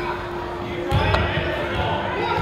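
Basketball gym game sound: indistinct voices of players and spectators echoing in a large hall, a steady hum behind them, and a ball thudding on the hardwood floor about a second in, followed by a sharp click.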